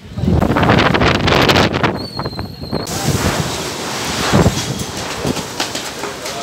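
Wind buffeting a phone's microphone outdoors in gusts. The loud rush of noise surges and eases, and the sound changes abruptly about three seconds in.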